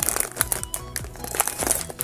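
Foil blind-bag wrapper of a Tokidoki Unicorno figure crinkling in irregular bursts as hands tear it open, with background music underneath.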